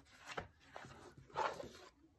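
A small hardback book being handled: soft paper and cover rustles with a couple of light clicks, then a brief louder rustle about a second and a half in as the book is closed and turned over.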